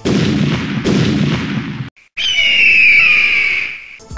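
Sound-effect transition in an electronic music mix: a sudden loud blast like an explosion, a second about a second in, a short cut to silence near the middle, then a high whistling tone over hiss that fades out.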